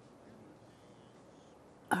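Quiet room tone with no distinct sound, ended by a woman starting to speak at the very end.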